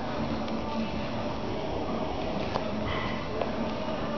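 A man's breathing during cross-body mountain climbers, with a few soft knocks on the exercise mat, over steady room noise and faint background music.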